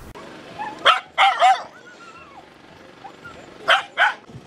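Dogs barking: a few short barks, two about a second in, the second longer and wavering like a yelp, and one more near the end.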